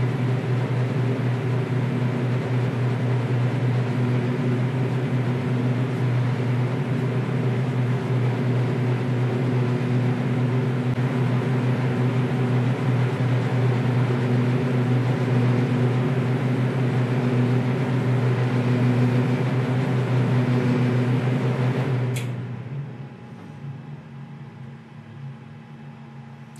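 Automatic wheel-painting machine running its curing cycle, its built-in extraction fan giving a steady hum with a low drone. About 22 seconds in it cuts off with a click as the curing finishes.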